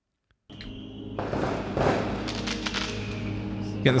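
Opening of a music video's soundtrack: firework bangs and crackle that swell about a second in and are loudest near two seconds, over a steady low musical drone.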